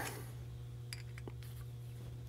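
A few faint, sharp metal clicks as a small steel indicator arm is worked into its snug-fitting hole-adapter body with pliers, over a steady low hum.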